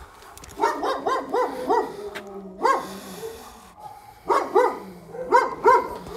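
A dog barking in quick runs of short, high barks, two to five at a time, with a low drawn-out whine between the runs.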